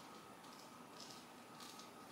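Faint scraping of a butter knife spreading butter across the crusty heel of a sourdough loaf: three soft strokes about half a second apart, over near-silent room tone.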